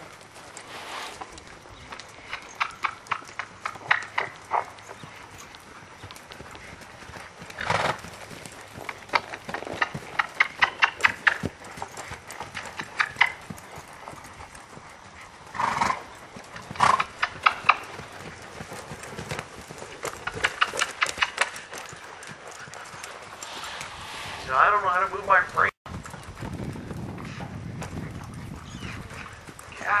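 A horse (an Appaloosa–Percheron cross mare) loping under a rider on sand footing: bursts of hoofbeats and tack rattles every few seconds. A short stretch of voice comes near the end.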